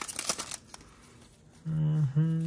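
Foil trading-card booster pack wrapper crinkling as the cards are slid out of the torn pack, a brief rustle in the first half second, then quiet.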